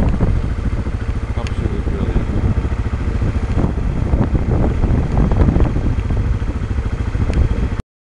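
Helicopter engine and rotor running steadily with a rapid low chop. The sound cuts off suddenly near the end.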